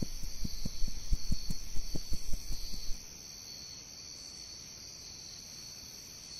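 Crickets chirping steadily as a night-time ambience. Over the first three seconds come a series of soft low thumps, about three or four a second, which then stop.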